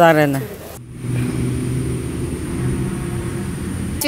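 A woman's speech breaks off, then outdoor traffic is heard: the steady low rumble of a motor vehicle engine running close by, with a faint thin high whine over it.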